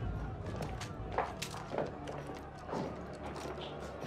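Footsteps of several people walking on a tiled floor, irregular knocks and clicks, with faint voices and soft music underneath.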